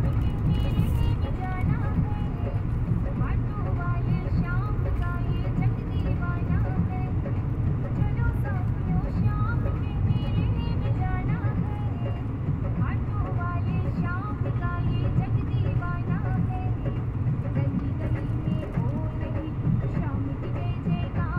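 Steady engine and road rumble inside a moving Mahindra Bolero's cabin, with music and singing playing over it.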